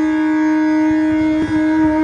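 Long bamboo bansuri holding one steady low note in Raga Pooriya Kalyan, briefly re-articulated about one and a half seconds in.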